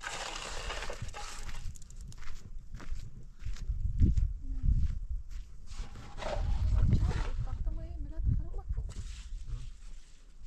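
Wet cement mortar sliding out of a metal pan onto the top of a concrete block wall, followed by scraping and light knocks as it is worked in.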